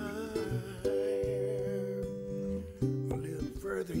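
Two archtop guitars playing a slow, rootsy blues passage between sung lines, plucked notes over a steady bass line. A held note wavers with vibrato through about the first two seconds.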